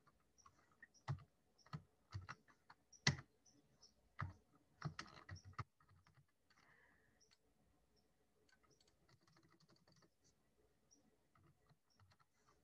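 Faint computer keyboard typing: irregular keystrokes through the first half, thinning to a few fainter taps afterward.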